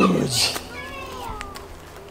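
A young child's high vocal cry, falling in pitch and ending just after the start, followed by a short breathy hiss and faint gliding voice sounds.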